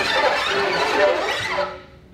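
String quartet playing new music: many bowed notes sliding up and down in pitch at once, squealing high, breaking off abruptly near the end.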